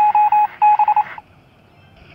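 Electronic beeping on one steady high pitch: a quick run of short beeps in two groups that stops a little over a second in.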